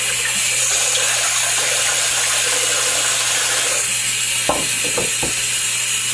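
Bathroom tap running steadily into a plugged sink partly filled with soapy water, the stream splashing into the water. A few light knocks come between about four and a half and five seconds in.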